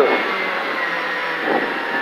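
Skoda Fabia R5 rally car at speed, heard from inside the cabin: the 1.6-litre turbocharged four-cylinder engine running with road noise, its pitch falling slightly.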